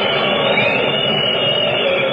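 Steady hiss of an old off-air radio recording, with faint wavering whistles on top. No music or voice is left.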